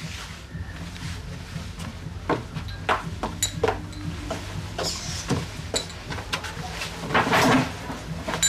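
Household movement sounds: a string of small knocks and clicks, like a door and cupboard being handled, and footsteps, with a louder rustle near the end as someone settles onto a bed.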